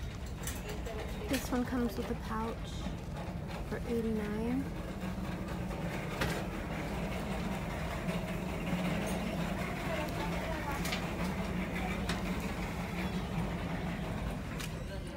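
Indistinct voices over steady store background noise, with a few sharp clicks and rustles from handbags being handled.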